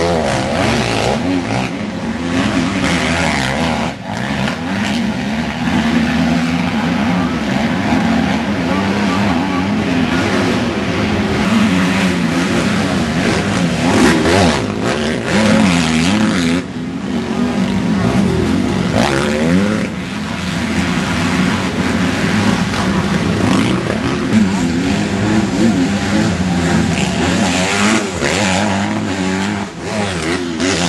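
Motocross motorcycle engines revving up and easing off over and over as the bikes accelerate out of corners and through mud, with several engines overlapping.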